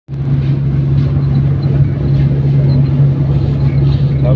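Motorcycle tricycle's engine running with a steady low drone, holding an even speed with no revving.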